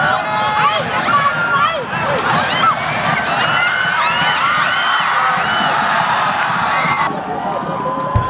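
Football crowd shouting and cheering, many voices with overlapping whoops rising and falling, around a shot that ends in a goal. The cheering thins out near the end.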